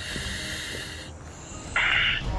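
Air hissing through a firefighter's breathing-apparatus face mask for about the first second, then a second, louder hiss near the end: breaths drawn and let out through the mask's air valve.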